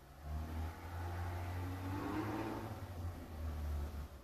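A motor vehicle driving past, its sound swelling to a peak about two seconds in and fading near the end.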